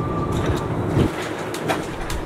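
City bus interior noise while riding: a steady low rumble from the engine and road, with a thin steady whine that fades out less than a second in and a few brief knocks or rattles.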